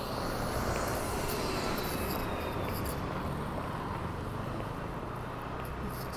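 Steady city street background noise, a low hum of distant traffic, slightly louder in the first few seconds.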